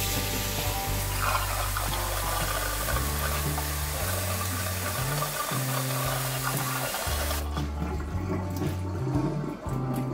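Kitchen tap running full onto tapioca pearls in a wire-mesh strainer and splashing into a stainless steel sink, rinsing the cooked pearls; the flow stops about seven seconds in. Background music plays throughout.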